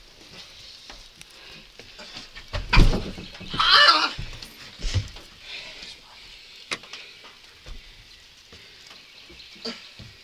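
A heavy body thud, then a loud, strained cry about a second later, then a few lighter knocks and bumps.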